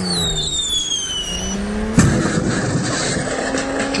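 Car sound effects: a racing car engine with screeching tyres that fall in pitch, then a sharp bang about two seconds in, with the engine running on after it.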